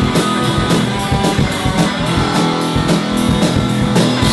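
Live rock band playing an instrumental passage between vocal lines: strummed electric guitar chords over bass and a steady drum-kit beat.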